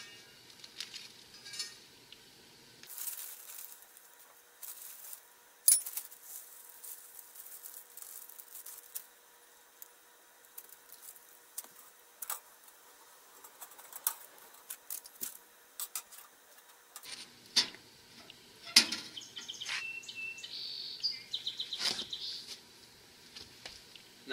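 Applewood chips poured from a plastic bag into a small metal pan, making sparse light clicks and rattles. Toward the end come a few sharper knocks as the pan is put into a Little Chief electric smoker.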